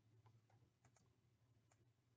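Near silence with a handful of faint computer mouse clicks, irregularly spaced, over a low steady hum.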